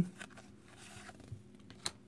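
Faint rustle of Pokémon trading cards sliding against each other as they are moved in the hands, with one sharp click near the end.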